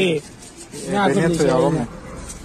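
A person's voice: a short sound at the start, then, about a second in, a drawn-out wavering vocal sound lasting about a second.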